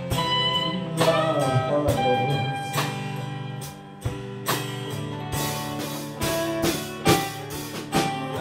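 Live band playing an instrumental passage: electric and acoustic guitars over bass and drums, with regular drum and cymbal hits.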